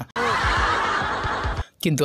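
A burst of laughter lasting about a second and a half, cut off abruptly.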